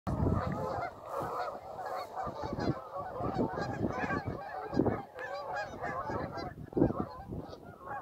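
A large flock of Canada geese honking continuously, many calls overlapping, as birds take off and fly. A few low thumps stand out, about five and seven seconds in.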